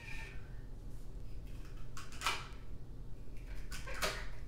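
A kitchen knife cutting celery stalks on a wooden butcher-block cutting board: two short cuts, one a little over two seconds in and one near the end, over a low steady hum.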